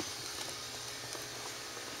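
Aquarium air stones bubbling, a steady hiss of air and water.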